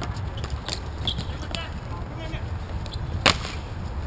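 A single sharp crack about three seconds in from a hockey stick striking during play on a sport-court rink, with a few lighter stick clicks before it, over a steady low rumble.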